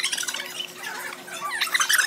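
High-pitched, squeaky laughter in many short gasping bursts: a person laughing helplessly, with no words.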